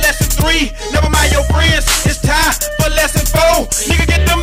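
1990s Southern hip hop track: vocals over a heavy bass and drum beat, loud and continuous.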